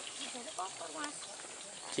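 Faint voices of people talking in the background, with no clear sound standing out.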